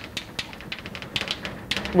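Chalk tapping and scratching on a blackboard as a line of words is written, an irregular run of short, sharp clicks.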